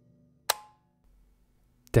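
Faint ambient music drone, then a single sharp click about half a second in, with a brief ring after it; the music drops out after the click.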